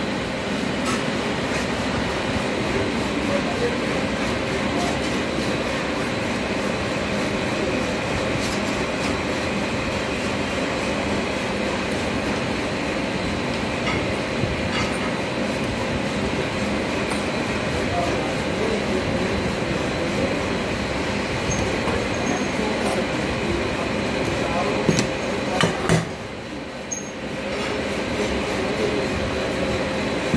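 Steady machine-shop background drone with light clicks and clinks of a hand tool on metal parts, and a few sharper metal knocks near the end.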